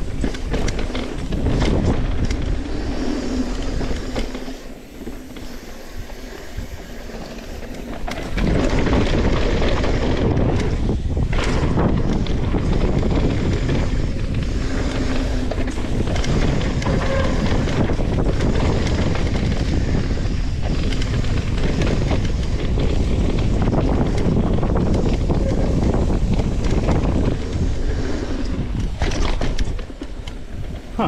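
Mountain bike running fast down a dirt trail: a steady rush of tyre rumble, bike rattle and wind buffeting the camera microphone. It eases off for a few seconds, then grows louder and heavier from about eight seconds in as the bike picks up speed.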